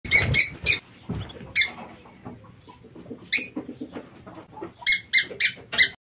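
Canaries giving short, sharp chirps: three in the first second, single ones at about one and a half and three and a half seconds, then four in quick succession near the end. There are a few low bumps under the first chirps.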